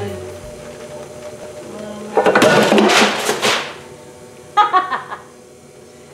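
Potter's wheel spinning while acrylic paint is poured onto its whirling bat. A loud rushing burst comes about two seconds in and lasts about a second and a half, and a short vocal sound follows a little before five seconds.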